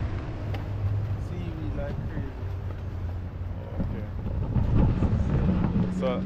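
Wind rumbling on the microphone over a steady low engine hum from a motorboat out on the waterway.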